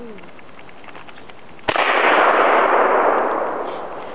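A single gunshot about 1.7 seconds in, from a long gun fired in the open, followed by a long echo that fades over about two seconds.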